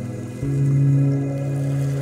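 Slow ambient music of sustained low pad and string chords; a new, louder chord swells in about half a second in.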